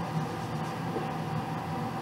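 Steady background hum of room tone, with no distinct knocks or clinks.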